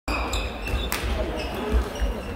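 Badminton play in a large gym hall: a sharp racket hit on a shuttlecock about a second in, over background voices and thuds of play echoing in the hall.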